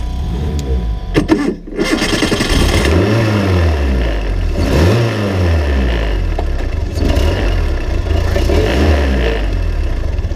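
Open-wheel race car engine heard close up from its onboard camera, starting: it catches about two seconds in, then idles with three quick throttle blips that rise and fall in pitch.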